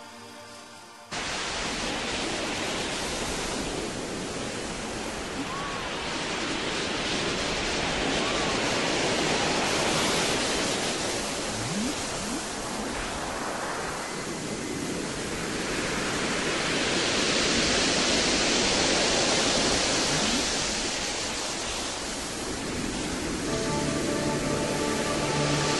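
A dense rushing noise wash cuts in abruptly about a second in, replacing soft pitched music. It swells and eases in slow waves, with a few faint gliding tones drifting through it, and pitched music tones come back in near the end.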